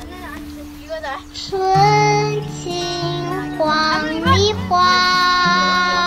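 Background music: a Chinese-language song, a voice singing long held, gliding notes over a steady low accompaniment.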